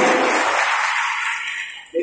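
Audience applauding in a hall, a dense clapping noise that thins and fades away just before the end.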